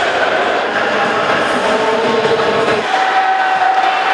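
Ice hockey arena crowd noise: a steady din with a held tone that steps up in pitch about three seconds in.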